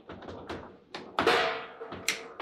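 Foosball table in play: a quick series of sharp clacks and knocks from the ball and the players' rods. The loudest hit comes a little past halfway and rings on briefly.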